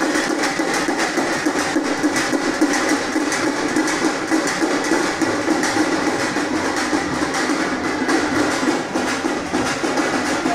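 Loud, fast, continuous drumming, a dense run of rapid strikes kept up without a break, typical of the drum band at a South Indian temple festival procession.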